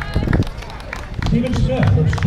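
A man's voice over a public-address system at an outdoor race, breaking off and resuming about a second and a half in, with scattered sharp taps from around the course.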